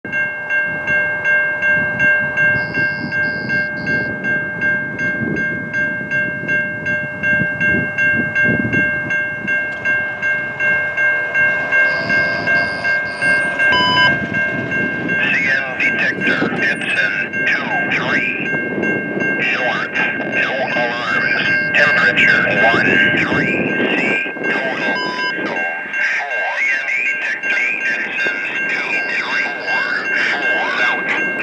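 Railroad crossing bell ringing steadily while a CN freight train led by ES44AC diesel locomotives approaches, its low rumble underneath. About halfway through, a voice comes in over the bell.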